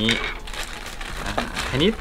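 Thin clear plastic bag crinkling as a figure part is pulled out of it by hand, a busy run of small crackles.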